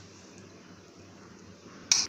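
A metal spoon clinks once, sharply, against a glass bowl near the end, while soaked poha is being stirred into curd; before that only faint room tone.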